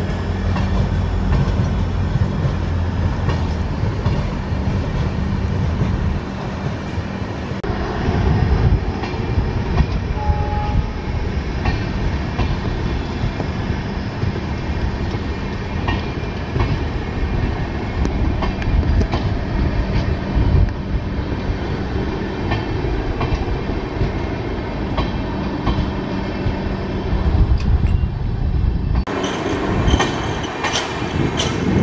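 Passenger train of LHB coaches rolling past close by: a steady rumble with the wheels clicking over rail joints. A steady low drone runs under it for the first seven seconds or so.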